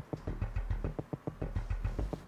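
Background music with a fast, steady pulse of short strokes over a low bass line.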